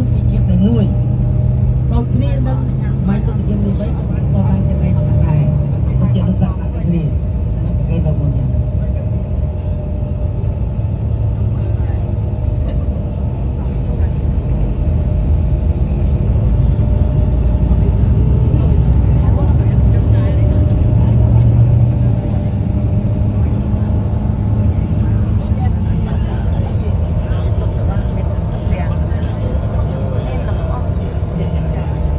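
Coach bus driving at road speed, heard from inside the cabin: a steady low engine and road rumble.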